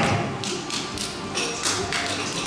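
High-heeled shoes clicking on a wooden stage floor as a woman walks forward, about three steps a second, over background music.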